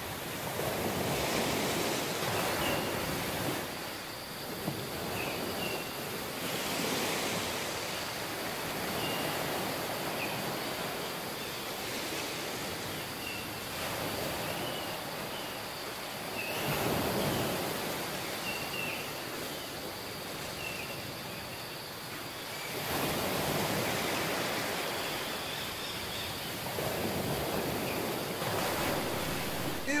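Ocean surf washing onto a sandy beach, a steady rush of noise that swells and ebbs irregularly every few seconds as waves come in.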